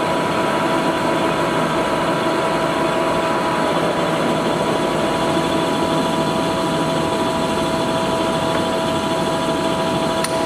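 A 25-inch Lodge & Shipley engine lathe running, its headstock gearing and large four-jaw chuck turning at speed, with a steady mechanical hum and an even whine.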